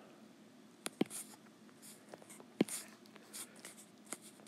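Apple Pencil tip tapping and sliding on an iPad Pro's glass screen, faint. There are two sharp taps, about a second in and just past halfway, with brief soft scratches between.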